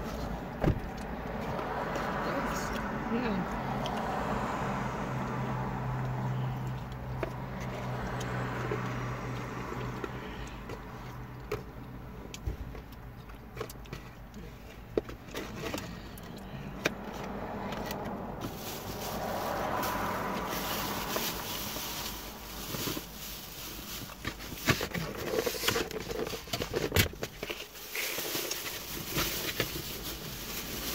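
Handling of a foam takeout container and a plastic takeout bag: scattered clicks and taps, turning into busier crinkling from about halfway through, with soft indistinct voices at times.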